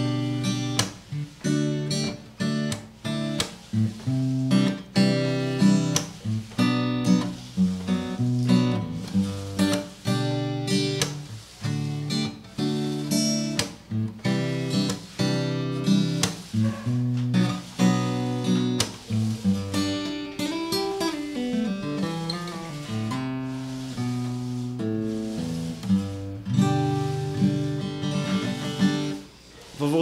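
Hofma HMF250 steel-string acoustic guitar with a laminated sapele body, strung with .011 strings, played with the fingers and no pick: strummed and picked chords throughout, with a softer passage of single notes and slides about two-thirds of the way through.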